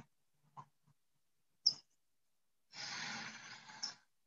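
A woman exhaling audibly, one soft sigh lasting about a second near the end, after a single short click about halfway through; the call's noise gate leaves dead silence between sounds.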